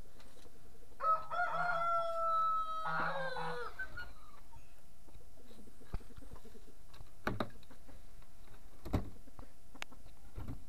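A rooster crows once, a long call of about two and a half seconds starting about a second in. A few short, sharp knocks follow later.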